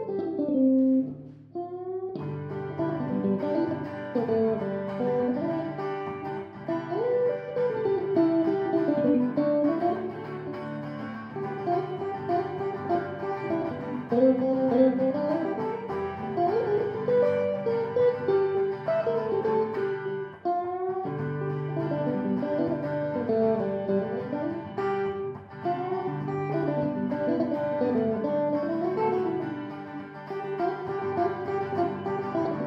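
Live guitar duet: a quick picked melody over held bass notes. The playing breaks off briefly about a second in, picks up again about two seconds in, and dips for a moment around twenty seconds.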